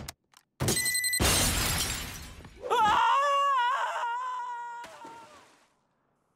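Cartoon crash sound effect: a sudden smash with glass shattering and a brief bright ring, its noise dying away over about two seconds. A high wavering pitched sound follows and fades out over the next three seconds.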